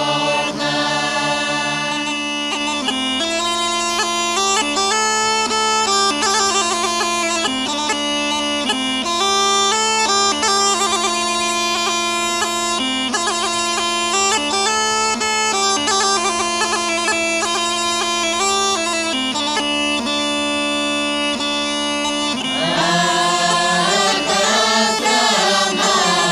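Rhodopean kaba gaida (large, low goatskin bagpipe) playing an instrumental passage: a steady drone under a busy, ornamented melody. Group singing fades out at the start and comes back in near the end.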